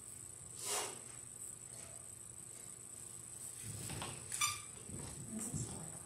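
Quiet church room tone picked up by a livestream microphone, with a steady high-pitched electronic hiss. There is a faint click near the start, another click a little past the middle, and low shuffling and handling noises in the second half.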